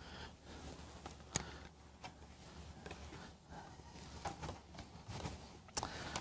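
Faint handling noises as a telescope is swapped onto a tripod-mounted alt-azimuth mount: a sharp click about a second and a half in, then a few soft knocks and rustles near the end.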